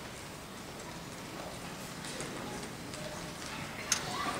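Hushed auditorium between songs: faint murmuring voices and scattered small clicks and knocks, with one sharp click just before the end.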